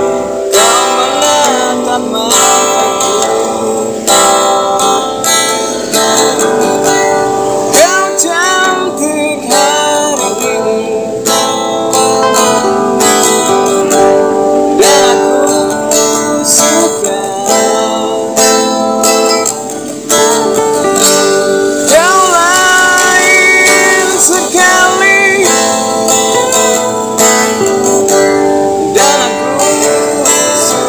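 Acoustic guitar strummed and picked, with a man's voice singing the melody over it. It dips briefly about two-thirds through, then comes back a little louder.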